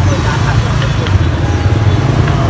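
Outdoor crowd and traffic ambience: a steady low rumble under faint scattered voices of people nearby.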